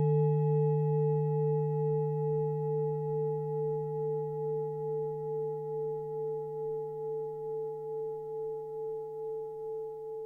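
A singing bowl ringing on after a single strike: a low hum with several higher tones above it, slowly fading, with a steady wavering beat.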